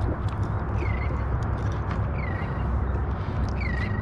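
Steady wind and water noise on an open-water microphone, with three short chirps, each dipping and rising in pitch, about a second and a half apart.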